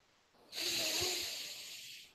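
A man's long breath, starting about half a second in and fading away.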